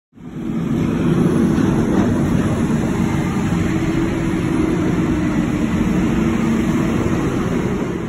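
Loud, steady street traffic noise with a low, even hum, like a vehicle engine running close by. It cuts off shortly after the end.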